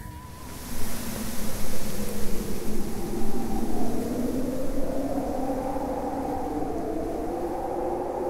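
Beatless outro of an electronic track: a steady hiss-like noise wash and a low rumble, with slowly wavering synth tones. The rumble rises and falls over the first few seconds, then settles.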